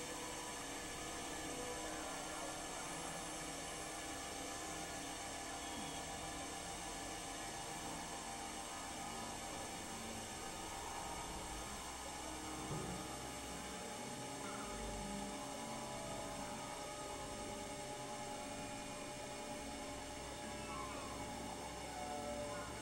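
Electronic synthesizer drone: many steady, sustained tones layered over a hiss, holding at one level, with a brief louder blip about halfway through and a few short pitch slides near the end.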